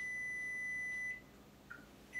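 Frigidaire Gallery microwave's electronic beeper sounding one long, steady, high-pitched beep that cuts off about a second in, followed by a faint short blip.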